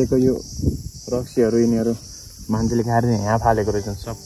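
A steady, high-pitched insect chorus drones throughout, with a man's voice talking in short stretches over it.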